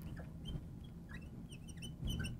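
Marker squeaking against a glass lightboard in short, faint chirps as a word is handwritten.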